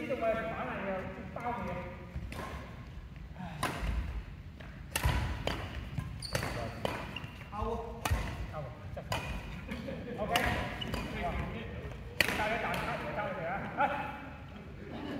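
Badminton rackets striking a shuttlecock in a doubles rally, about ten sharp hits roughly a second or so apart, ringing in a large sports hall.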